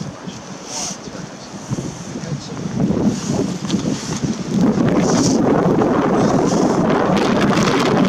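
Wind blowing on the microphone, a rough rumbling rush that grows much louder about halfway through and stays strong.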